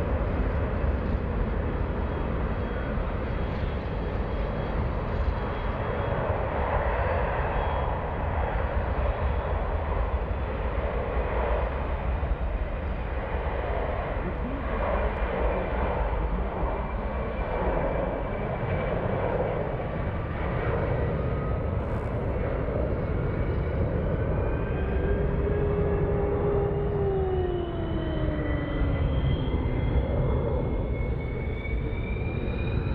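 C-17 Globemaster III's four Pratt & Whitney F117 turbofans at takeoff power: a steady jet roar with a heavy low rumble as the transport climbs out. In the last several seconds, as it banks away, engine whine tones glide in pitch, some falling and some rising.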